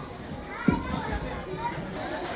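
Many young children's voices chattering together in the background, no one voice standing out, with one short thump a little past half a second in.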